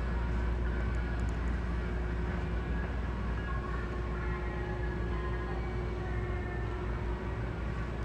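Steady low indoor room hum with a faint steady tone, the even drone of building ventilation. No engine is running.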